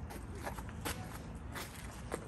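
Footsteps walking on hard ground, several steps roughly half a second apart, over a steady low background rumble.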